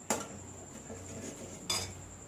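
Kitchen dishes and utensils clinking twice: a sharp knock right at the start, then a brighter ringing clink near the end.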